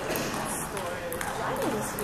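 Table tennis rally: the celluloid-type ball clicking sharply off rubber paddles and the table, several hits in quick succession, over the chatter of people in the hall.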